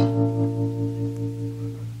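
Keyboard intro to a slow song: one chord struck right at the start and left to ring, slowly fading away.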